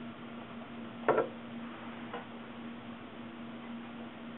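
A sharp metallic tap about a second in and a fainter one a second later, from a caliper and a thin sheet-metal blank being handled while a line is scribed; a steady low hum and hiss sit underneath.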